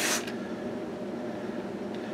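Hiss of a hand-pump water sprayer misting, cutting off a fraction of a second in, leaving a steady low background hum.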